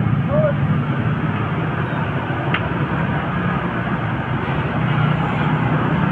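Hot oil sizzling and crackling steadily as battered vegetable fritters deep-fry in a large wok, with a low steady rumble underneath and one sharp click midway.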